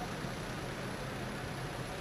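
A bus engine running steadily: a low rumble under an even hiss, with no change in level.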